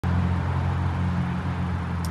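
Motor vehicle engine running, a steady low hum under a haze of road and outdoor noise.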